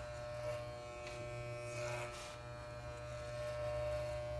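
Electric hair clippers buzzing steadily as they cut a young boy's hair above the ear.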